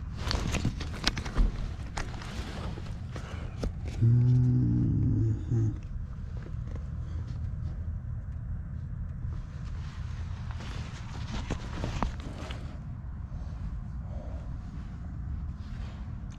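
Clicks and knocks from handling meter test leads and wiring in a gas pack's control panel, over a low steady rumble. A short low hum lasts under two seconds about four seconds in.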